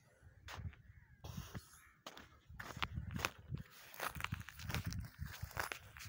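Footsteps on stony, dry ground: irregular scuffs and clicks of stones underfoot, busier in the second half.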